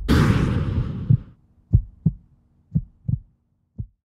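Logo-animation sound design: a whoosh-and-hit that dies away over about a second, then low heartbeat-like thuds, mostly in pairs about a second apart, over a faint steady hum.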